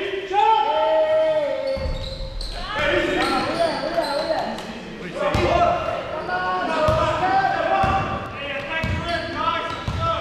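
Basketball being dribbled on a hardwood sports-hall court, the ball hitting the floor at irregular intervals, with players' and spectators' voices calling out, echoing in the large hall.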